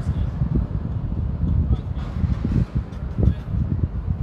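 Wind buffeting a phone's microphone: an uneven low rumble that rises and falls in gusts.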